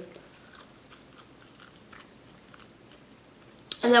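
Faint chewing with small wet mouth clicks: a person eating French fries close to the microphone.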